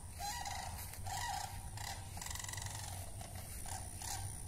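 Chickens calling over and over, short calls about two a second, over a steady high hum.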